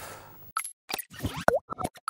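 Animated TV bumper's sound effects: a quick run of short electronic plops and pops, about half a second in, with a brief swooping tone among them and clean silences in between.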